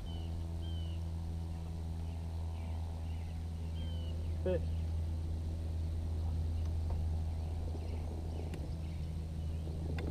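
Bass boat's bow-mounted electric trolling motor running, a steady low hum that switches on at the start and holds an even pitch throughout.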